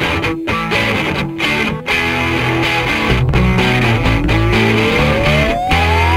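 Guitar rock song with distorted electric guitar playing. In the second half one note climbs in a long, smooth upward glide and settles on a held high note near the end.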